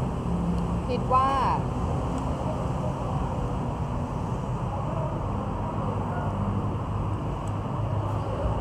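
Steady low rumble of background noise, with a short spoken phrase about a second in.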